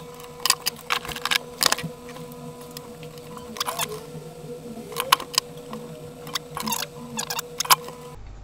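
Scissors snipping thin wires, with small clicks of wire and tools being handled, in scattered clusters over a faint steady hum.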